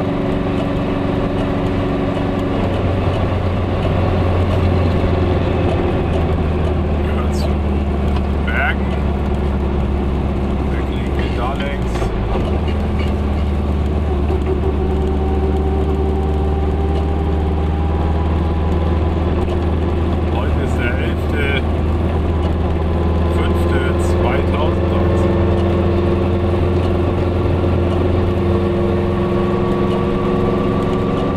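Goggomobil's air-cooled two-stroke twin engine running steadily under way, heard from inside the little car's cabin. The engine note changes pitch about two seconds in and again around twelve seconds.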